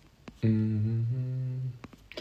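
A man's closed-mouth "hmm", held for a little over a second with a small step in pitch about halfway: a thinking sound while he ponders an answer.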